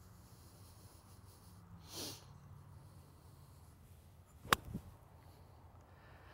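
Quiet background with a short soft breath-like rush about two seconds in, then a single sharp click about four and a half seconds in, followed by a fainter one.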